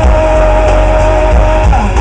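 Live rock band playing through outdoor PA speakers, heard from out in the crowd: an instrumental passage with a long held note over heavy bass and drums, the note bending near the end.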